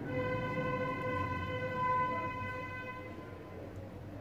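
A steady, evenly pitched tone with overtones, held for about three seconds and then fading away.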